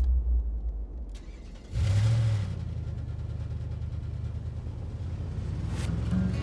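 A car engine starting about two seconds in, a short loud burst as it catches, then running with a steady low hum.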